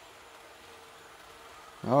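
Faint, steady running sound of a Hornby Class 395 'Javelin' 00 gauge model train's motor and wheels on the track, driven at full controller speed, with a faint steady tone held through most of it.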